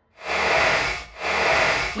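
A hissing, rushing sound effect in two swells of about a second each, with a faint low hum beneath.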